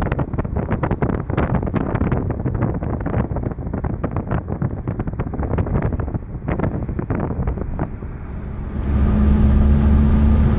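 Wind buffeting the microphone of a phone filming from a moving car, rough and gusty. About nine seconds in it gives way to the steady, louder hum of the car's engine and road noise heard inside the cabin.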